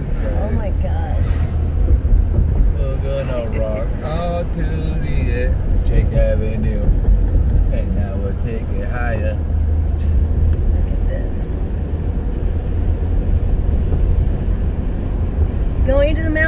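Steady low rumble of road and engine noise heard inside a moving car's cabin, with faint talk in the first half.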